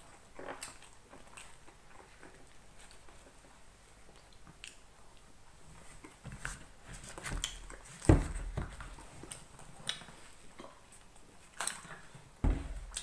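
A person chewing a mouthful of bagel, with soft scattered mouth clicks. There is a sharp thump about eight seconds in, the loudest sound, among some low handling rumble.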